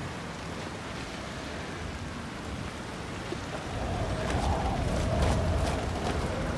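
Street traffic noise: a steady hiss, then a louder low rumble of a passing vehicle from about four seconds in.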